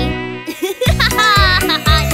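A buzzing mosquito sound effect, a wavering whine, over children's song music with a steady drum beat.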